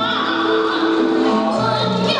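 A female soprano singing solo through a microphone over musical accompaniment, holding long sustained notes.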